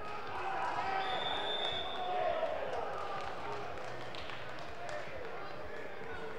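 Indistinct voices echoing in a large sports hall, with a few scattered thuds. A brief high-pitched tone sounds about a second in.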